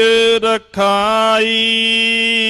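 A man's voice chanting the closing words of a Gurbani verse in a sung recitation on one reciting pitch, with short breaks between syllables. From a little past halfway in, the final syllable is drawn out into one long, steady held note.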